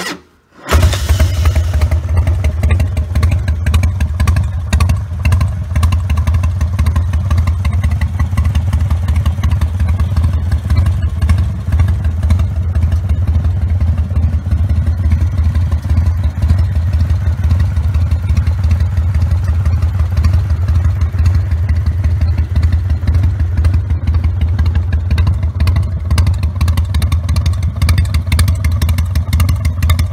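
Carbureted 1998 Harley-Davidson Fat Boy's Evolution V-twin, with Screaming Eagle pipes, started with a brief crank and catching within a second, then idling steadily with a deep, low exhaust note.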